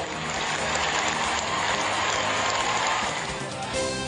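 A rushing noise swells and fades, then TV news opening theme music with sustained tones starts near the end.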